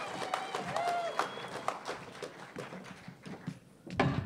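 Audience applauding, with a few voices calling out, the clapping thinning out and dying away over about three seconds. A single knock near the end as a microphone stand is handled.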